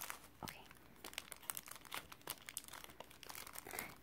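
Paper craft tags and plastic packaging crinkling and rustling as they are handled, a faint, irregular string of crackles.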